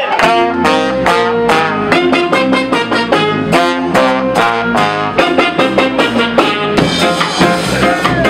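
Live ska band playing an instrumental: trombone, saxophone and trumpet playing the melody together over drums and electric guitar, with a steady beat.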